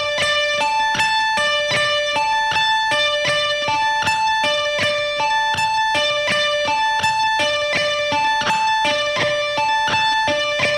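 Electric guitar playing an even, looping run of single picked notes, about four a second, on the B and high E strings. It is an economy-picking exercise: an upstroke on the B, a downstroke and an upstroke on the high E, then another upstroke on the B.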